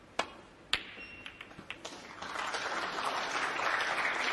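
Snooker cue striking the cue ball with a sharp click, then a second louder click about half a second later as the cue ball strikes a red, followed by a few lighter ball clicks. From about halfway in, audience applause builds as the red is potted.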